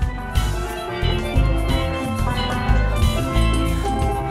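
Steel pan band playing: two sets of steel pans ring out a melody of bright, bell-like notes over a recurring deep bass beat.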